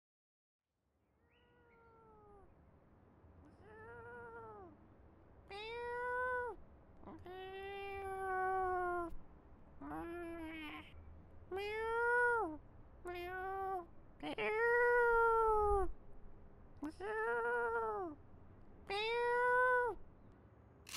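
A cat meowing about ten times in a row, each meow rising and falling in pitch. The calls start faint and grow louder over the first several seconds, and two of them are long and drawn out.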